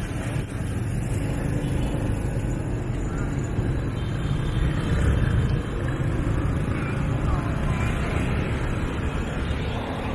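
Motorbike and car traffic heard from among the scooters while riding: a steady, rumbling mix of engine and road noise, with wind on the microphone.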